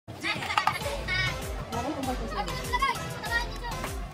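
Many children's voices shouting and calling out over one another during a street game, with music underneath.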